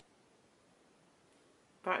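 Near silence, then a woman starts speaking near the end.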